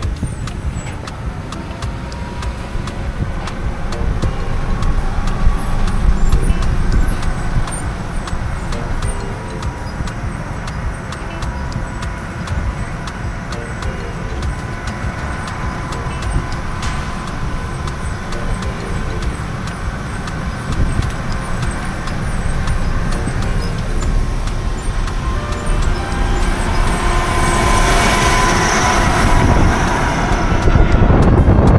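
Car travelling on an open road, heard from inside the cabin: a steady low rumble of engine and tyres, swelling into a louder rushing near the end.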